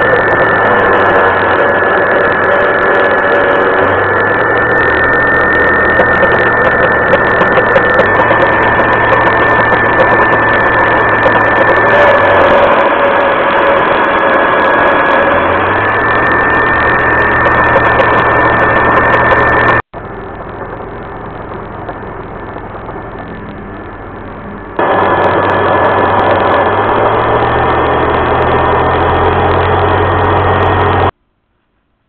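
Home-built CNC router's spindle running with a steady high whine while a 3 mm carbide end mill cuts 19 mm MDF, over a low hum that shifts in pitch a few times as the machine moves. A little under two-thirds of the way in the sound cuts off abruptly to a quieter level for about five seconds, then the loud cutting sound returns.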